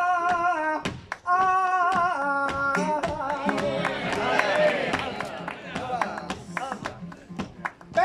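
Male flamenco singer drawing out a long, wavering melismatic line in bulerías, over sharp rhythmic palmas (handclaps) and flamenco guitar. After about three seconds the held voice gives way to a busier stretch of guitar and voices, with the clapping going on.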